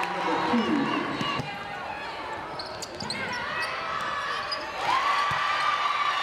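Live gym sound of a basketball game: a basketball bouncing on a hardwood court, sneakers squeaking, and spectators' voices and shouts, with one loud held shout starting about five seconds in.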